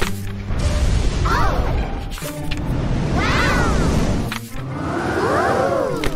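Cartoon disaster sound effects: a loud deep rumbling with crashing, broken by a short gap just past the middle, and a rising-then-falling wail over it three times.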